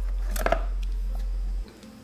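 A low steady hum that cuts off abruptly about one and a half seconds in, with a single short click about half a second in as the box contents are handled.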